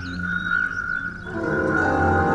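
Eerie background score: a sustained high tone over a low droning hum, swelling into a fuller held chord about a second and a half in.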